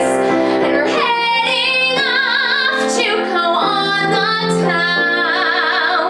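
Contemporary musical-theatre song: a woman's singing voice, with vibrato on held notes, over a steady accompaniment.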